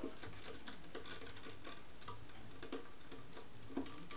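Light, irregular clicks and taps, a few each second, of a hedgehog's claws on a wooden platform as it walks about.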